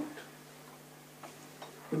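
A pause in speech: quiet room tone with a steady low hum and a few faint ticks in the second half, with a man's voice starting again at the very end.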